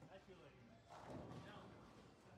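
Faint, indistinct voices over near silence.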